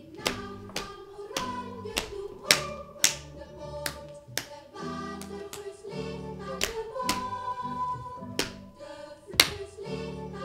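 Instrumental music: sharp percussive strikes, roughly twice a second and unevenly spaced, over held pitched tones.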